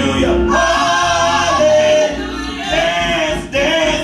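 Gospel praise song sung by a small group of voices, a man and two women, on microphones, over a steady low instrumental accompaniment.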